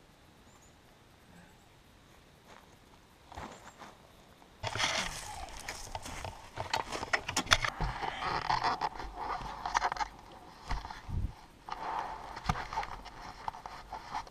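Near silence for the first few seconds, then handling noise from a helmet-mounted camera as the helmet is picked up and pulled on: rustling and scraping against the microphone with many sharp clicks and knocks.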